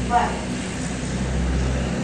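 A single spoken "Why?", then a steady low hum of background noise fills the pause and stops abruptly near the end.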